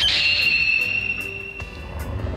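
A high, steady whistle-like sound effect that comes in suddenly and holds for nearly two seconds before fading, over soft background music.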